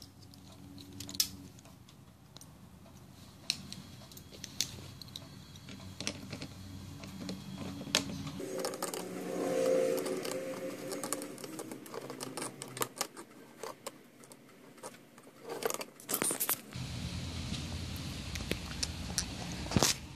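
Light metal clicks and clinks, scattered and irregular, from an open-end wrench working the SMA antenna connector on a radio-control transmitter, with faint handling noise.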